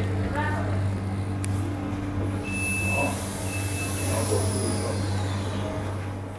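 Cabin sound of a standing EN57 electric train: a steady low electrical hum under indistinct voices. About halfway through come two short high beeps over a hiss that fades away.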